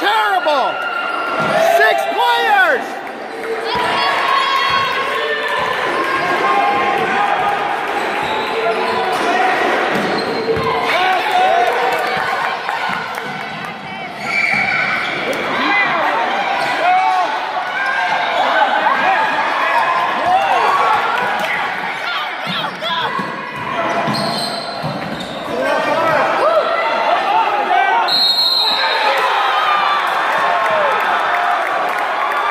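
A basketball game on a hardwood gym court: the ball dribbled and bouncing, sneakers squeaking on the floor in short chirps, and voices of players and spectators shouting and talking.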